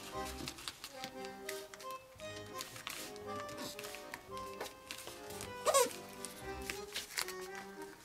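Soft background music of steady held notes, with faint clicks and rustles of origami paper being creased by hand. There is a brief, louder gliding sound about six seconds in.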